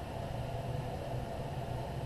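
Steady background hiss with a faint low hum: room tone and recording noise, with no distinct sound events.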